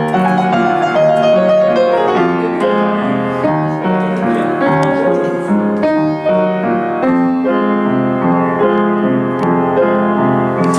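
Upright piano being played: a continuous run of sustained notes and chords, changing every fraction of a second.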